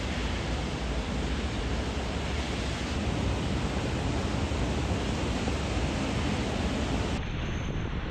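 Wind buffeting an outdoor microphone: a steady rushing noise with a heavy low rumble, which changes and thins near the end.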